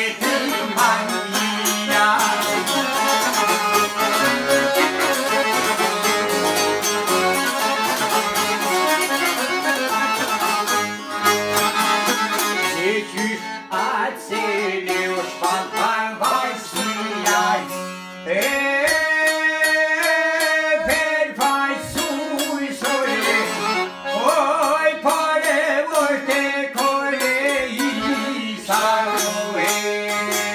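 Albanian folk tune played on a çifteli, a larger long-necked lute and a Hohner piano accordion: fast, busy plucked notes over accordion chords, with a held chord for a few seconds past the middle.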